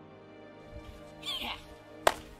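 Soft, sustained string background music, with a short high cry about a second and a quarter in that falls steeply in pitch.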